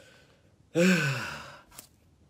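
A man's loud, breathy voiced sigh about a second long, falling in pitch, near the middle, followed by a small click.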